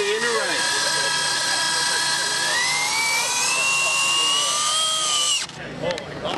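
Electric motor of a 1/10-scale RC drag car whining as it spins the rear tyres in a burnout on a carpet pad. A steady high whine climbs in pitch about two and a half seconds in, then cuts off suddenly near the end.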